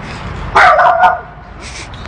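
Small dog barking: one loud, pitched bark about half a second in.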